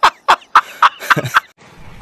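A man laughing loudly in short staccato bursts, about four a second, that stop about a second and a half in.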